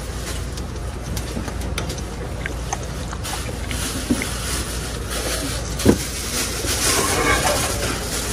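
Steady hissing background noise at a street food stall, with a few light clicks. One click comes about four seconds in as metal tongs lift a fried dumpling, and a sharper knock comes about six seconds in.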